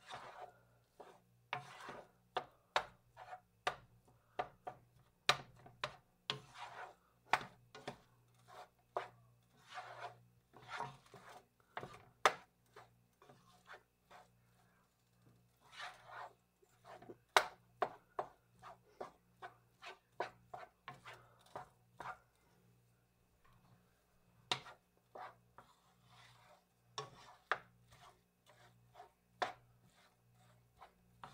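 A wooden spoon stirring and scraping ground beef and rice in a nonstick skillet: irregular scrapes and soft knocks, with a few sharp taps against the pan.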